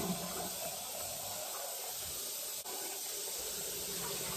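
Kitchen faucet running steadily while rice is rinsed under it to wash off the starch.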